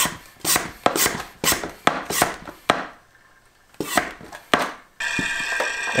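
Hand pump of an Oregon 88-400 lube-oil extractor being stroked, about eight sharp pumping strokes with a short pause near the middle. About a second before the end a steady sucking noise starts, the hose drawing air with the last of the oil from a lawnmower engine's dipstick tube: the sign that the oil is almost all extracted.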